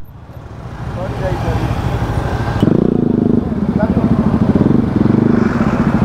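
Motorcycle engine in traffic. Its sound builds over the first couple of seconds, then a loud, steady engine note with a fast, even pulse sets in about two and a half seconds in.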